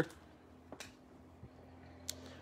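Quiet pause with a faint steady low hum and a single soft click a little under a second in, from hands sliding baseball trading cards across one another.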